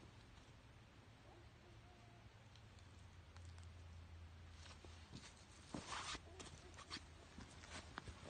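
Near silence, with a few faint footsteps crunching dry leaves past the middle.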